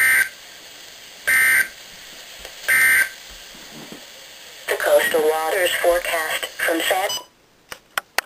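Three short screechy bursts of EAS/SAME digital data tones from a NOAA Weather Radio broadcast, about a second apart: the end-of-message code that closes the tornado warning. A few seconds later a voice is heard briefly before the audio cuts off with a couple of clicks.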